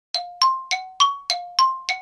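A quick run of seven bright, bell-like chime notes, about three a second, alternating between a lower and a higher pitch, each ringing briefly and fading.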